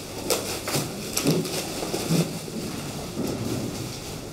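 Press camera shutters clicking at irregular moments, several in the first half, over the low murmur of a crowded room.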